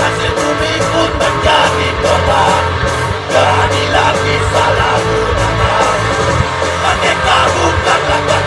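Live rock band playing loudly through a PA: electric guitars, bass and drums, with a singer's voice over them.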